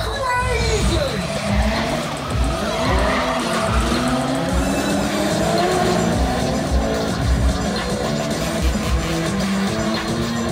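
Stunt cars and motorbikes revving and skidding, tyres squealing, over loud music with a steady bass beat.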